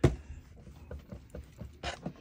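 Clothes iron set down onto fabric on a desk with one sharp thump, then faint light knocks and scraping as it is pushed over the cloth, with a short rustle near the end.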